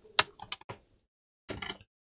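Plastic clips of an HP Envy x360 laptop's bottom cover clicking and snapping as the cover is pried off the chassis by hand: a quick run of sharp clicks in the first second, and a few more near the end.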